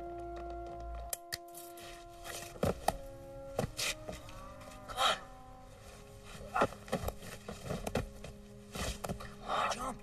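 Film score of held, sustained chords that changes abruptly about a second in. Over the continuing held notes come scattered sharp knocks and brief wordless voice sounds.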